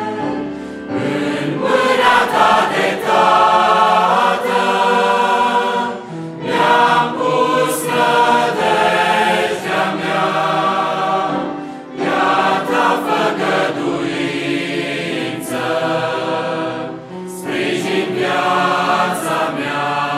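Large mixed choir singing a hymn in full harmony with piano accompaniment, in long phrases with short breaks between them.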